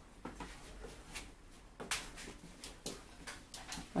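Wooden spatula stirring thickening pastry cream in a saucepan: faint, irregular scrapes and soft knocks against the pan.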